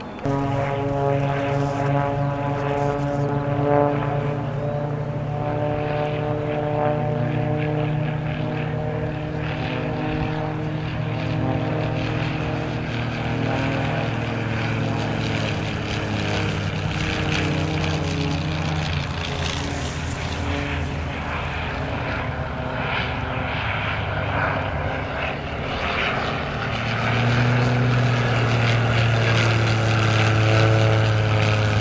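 Extra 300 aerobatic planes flying past low, their six-cylinder piston engines and propellers droning steadily, the pitch drifting as they pass. Near the end a louder, deeper drone builds as another plane approaches.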